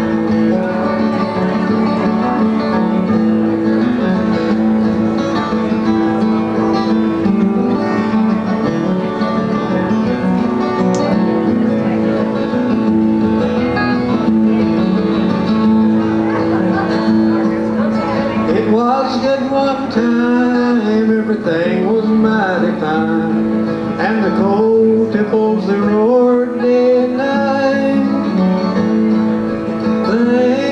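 Two steel-string acoustic guitars flatpicking a tune together over a steady bass line. About two-thirds of the way through, a wavering melody line rises above them.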